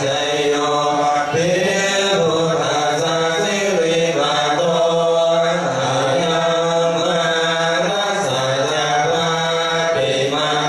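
Thai Buddhist chanting: voices reciting together in a steady, droning chant with long held notes and no pauses.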